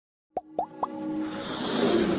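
Logo-intro sound effects over music: three quick plops about a quarter second apart, each a short upward-gliding pop, then a rising wash of sound that grows steadily louder.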